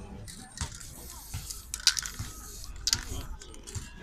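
Aerosol spray-paint cans being handled: a short hiss of spray near the start, then sharp metallic clinks and clicks, the loudest about two and three seconds in.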